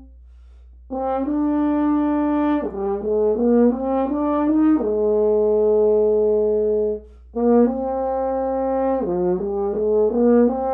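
Solo French horn playing a slow melody. It enters about a second in with long held notes, steps down through a run of shorter notes to a long low note, breaks off briefly about seven seconds in, then starts the next phrase.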